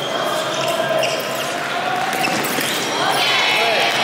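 Fencers' shoes squeaking and stepping on the piste in a large hall, with voices across the hall and a higher squeal about three seconds in.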